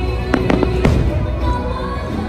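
Aerial fireworks bursting, with three sharp bangs in the first second, over music playing steadily.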